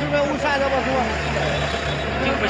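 Men talking over a steady low hum of a vehicle engine running.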